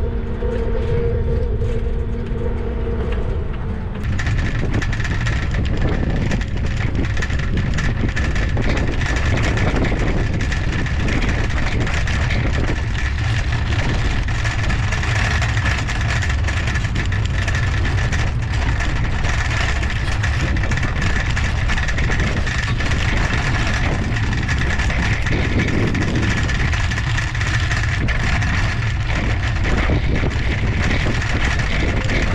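Wind rushing over an action camera's microphone, with tyre and road noise from a trike rolling along. A humming tone in the first few seconds gives way to a steady high whine that runs on after about four seconds.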